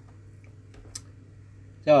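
Quiet outdoor background with a steady low hum and a single faint click about a second in; a man's voice starts right at the end.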